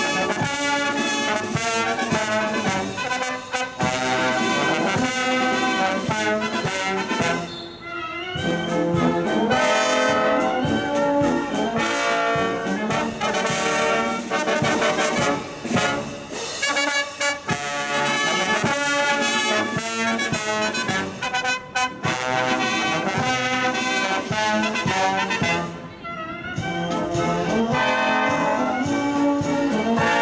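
Military marching band, brass to the fore, playing a march while on the move. The music drops briefly about eight seconds in and again about 26 seconds in.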